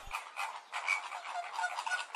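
A flock of flamingos calling, a busy chatter of many short overlapping calls.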